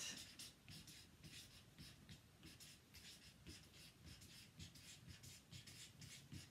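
Faint felt-tip marker writing on a chart-paper pad: a quick string of short scratchy strokes as the letters are drawn.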